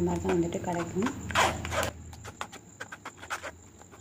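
A metal spoon scraping and pressing wet grated potato pulp through a steel tea strainer: a short scraping rush, then a run of light, irregular clicks of spoon on steel. A voice is heard briefly at the start.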